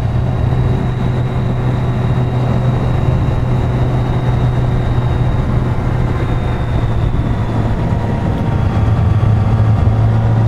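Motorcycle engine running at a steady cruise along with rushing wind noise, the engine note rising slightly near the end.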